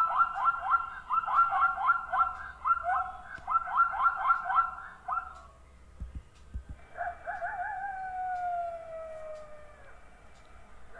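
Zebra calling: a rapid series of high, yelping bark-like notes in quick runs for about five seconds. After a few low thuds, a spotted hyena gives one long whoop that wavers at first and then slides steadily down in pitch over about three seconds.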